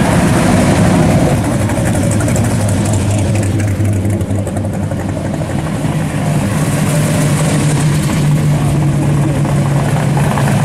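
Engines of classic hot rods and muscle cars rumbling as they cruise slowly past one after another. The low engine note shifts higher partway through as one car gives way to the next.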